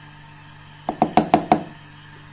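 A spoon is knocked against a steel mixer-grinder jar about five times in quick succession, a little under a second in. Each knock is short and ringing.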